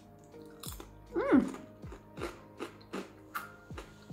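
Crunching chews on a crisp cracker, about three crunches a second, over quiet background music, with a short hum of the voice about a second in.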